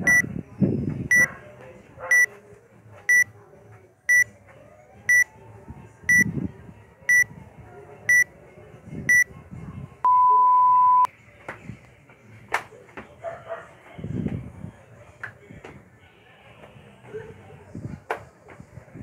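Workout timer app's countdown: a short high beep once a second, ten times, then a longer, lower tone that marks the start of the set. After it come scattered thuds from jumping on pavement.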